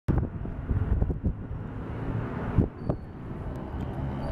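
Uneven low rumble of wind buffeting the camera microphone, with a few sharp knocks of handling noise.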